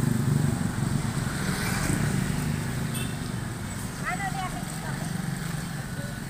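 A motorcycle engine passing close by and fading away, over a steady rumble of street traffic.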